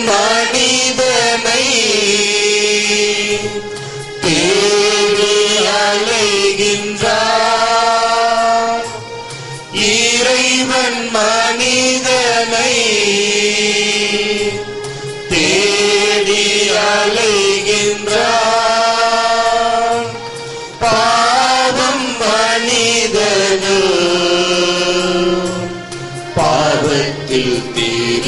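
A hymn sung in repeated melodic phrases of about five seconds each, over steady sustained instrumental tones, with a brief dip between phrases.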